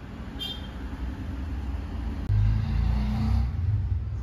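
Low engine rumble of a motor vehicle going by, swelling suddenly about two seconds in and staying loud.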